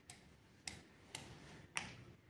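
Three faint, sharp taps as a plastic toy doll is moved about and knocked against a plastic toy frame, at uneven spacing.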